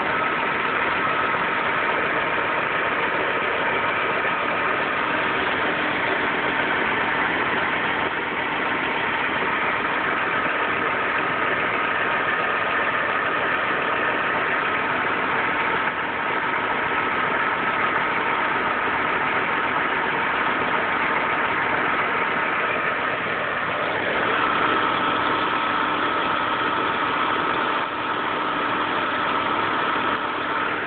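Volvo 850 inline five-cylinder engine idling steadily on a freshly fitted timing belt, with a steady high whine over the engine note.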